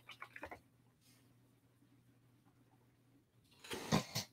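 A few faint computer-keyboard keystrokes at the start as a command is finished, then very quiet room tone with a faint low hum. A brief, louder rush of noise comes just before the end.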